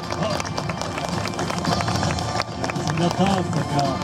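Quick footsteps of performers hurrying across a paved stage, mixed with scattered clapping and some voices.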